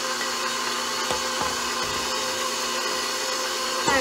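Electric stand mixer running steadily, its flat beater churning thick peanut butter fudge mixture as hot sugar syrup is poured in, with a few light knocks partway through.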